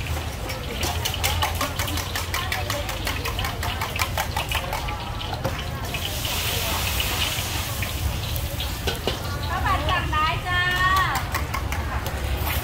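Gas wok burner running with a steady low roar, with sharp metal clinks from a steel cup and ladle working over the wok. A short hiss comes about six seconds in.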